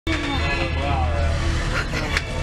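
Steady low drone of a Seine tour boat's engine, heard inside the passenger cabin, with people's voices over it in the first second and a half.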